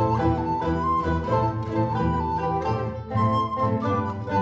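Alto recorder playing a melody over a plucked-string orchestra of mandolins, mandolas and guitars.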